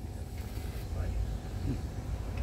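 A man chewing a bite of burger, with faint mouth sounds and a brief hum near the end, over a steady low rumble.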